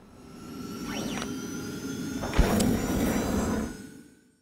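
Animated logo sound effect: a whoosh that swells up over the first two seconds, a sharp hit about two and a half seconds in, then a fade-out near the end.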